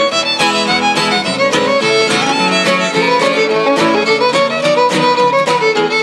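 Fiddle playing a tune of quick notes, backed by two acoustic guitars strumming a steady beat.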